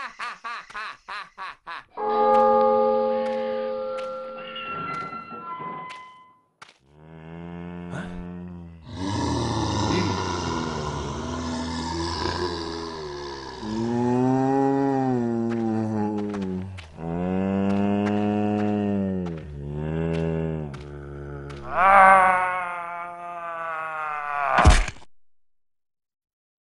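Monster-cartoon soundtrack: a short run of musical notes stepping downward, then several long pitched cries that rise and fall, each one to two seconds long. A higher, brighter cry comes near the end, then the sound stops.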